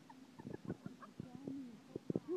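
Faint, short voice sounds, small squeaks and a brief low wavering hum, among scattered light clicks.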